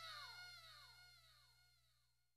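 Faint, fading tail at the end of a heavy metal song: a falling pitch echoing about four times a second, dying away to near silence within about a second and a half, over a faint steady low hum.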